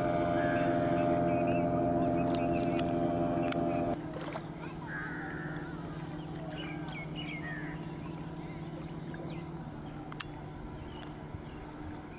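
Motorboat engine running steadily, loud for about four seconds, then dropping suddenly to a quieter, lower hum that carries on. A few short bird calls sound over it in the middle.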